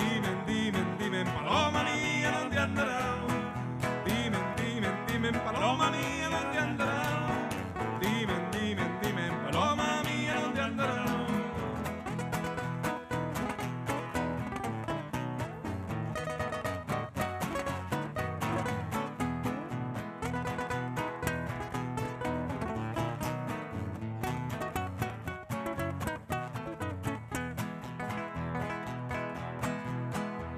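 Two acoustic guitars playing a lively Chilean folk song live through a PA. A voice sings drawn-out phrases over them for roughly the first ten seconds, and after that the guitars play on alone.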